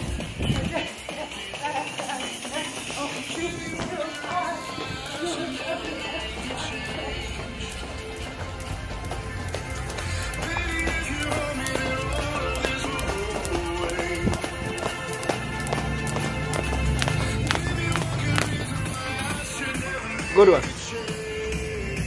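Background pop music with singing, over light repeated tapping of a skipping rope and feet landing on a hard floor.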